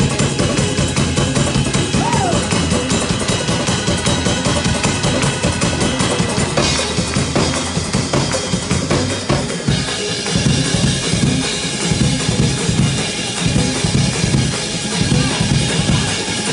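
Live gospel praise-break music from a church band, led by a drum kit playing a fast, driving beat on bass drum and snare.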